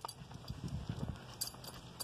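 Footsteps of a person and a leashed dog walking on asphalt: soft, irregular taps with a couple of faint clicks.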